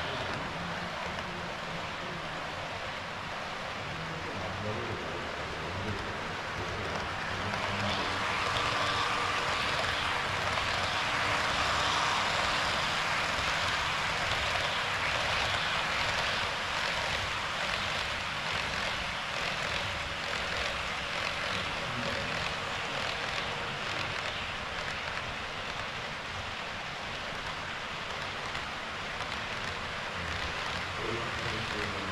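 HO-scale model trains running along the layout's track: a steady rolling whir of wheels on rails and motors, growing louder for several seconds in the middle as a long train passes close.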